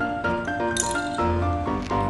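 Background music: a melody of held notes stepping from pitch to pitch.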